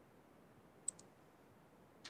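Near silence with faint hiss, broken by two quick clicks close together about a second in.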